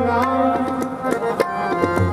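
Sikh kirtan: two harmoniums sounding held chords, with tabla strokes and a singing voice gliding between notes.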